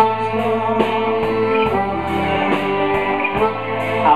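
Live blues band playing: a harmonica, cupped against the vocal microphone, holds long notes over electric guitar, bass and drums with a steady cymbal beat.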